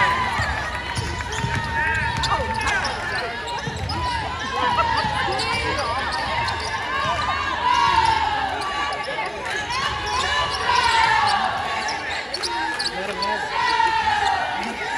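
Indoor basketball game: a ball bouncing on the hardwood court and sneakers squeaking again and again as the players move, with voices calling out in the gym.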